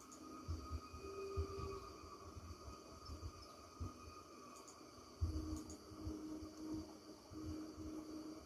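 Quiet room: faint low bumps and rustles of movement close to the microphone, scattered irregularly, over a faint steady hum.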